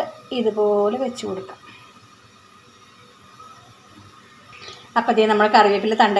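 A woman's voice speaking briefly near the start and again from about five seconds in, with a quiet stretch between.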